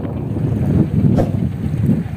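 Wind buffeting the microphone outdoors: a loud, uneven low rumble that rises and falls in gusts, with one brief tick a little after a second in.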